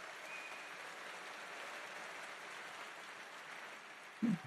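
Large audience applauding, a steady, fairly faint clatter of many hands clapping that tapers off near the end.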